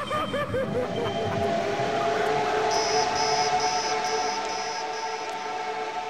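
Beatless breakdown in an early-1990s techno track. A wobbling, siren-like synth tone gives way to a steady two-note synth drone. About halfway in, a high electronic beep joins, pulsing a little over twice a second, with no kick drum.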